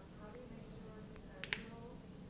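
Plastic water bottle being handled at its cap: two sharp plastic clicks in quick succession about a second and a half in.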